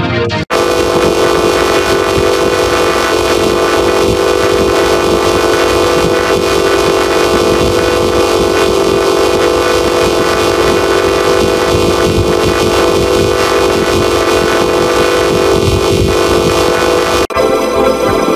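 Heavily distorted, over-amplified audio from a 'Discord enhancer' style render effect: a loud, dense, buzzing chord held steady, like a blaring horn. It cuts out briefly about half a second in and again near the end, where a different effect takes over.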